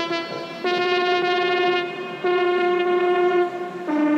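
Electronic dance music in a breakdown: a brassy synth lead holding long notes, moving to a new note about every second and a half, with no kick drum.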